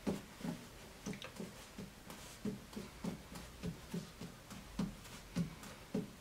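Small juggling balls being set down on a cloth-covered tabletop in a steady rhythm, about three soft thuds a second, as they are moved over one another in a tabletop juggling pattern.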